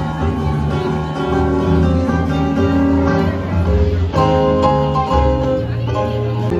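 A jazz combo playing live, with a moving bass line under sustained chords.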